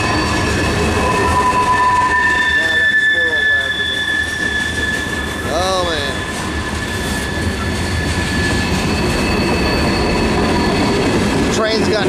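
Loaded freight cars (covered hoppers, then tank cars) rolling past close by, with a steady low rumble of steel wheels on the rails. Several long, steady, high-pitched squeals run over it: wheel flanges squealing on the curve.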